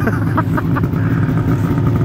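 Snowmobile engines idling side by side: a steady low drone.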